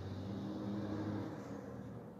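Room background noise: a steady low hum, with a faint low drone that swells and fades during the first second or so.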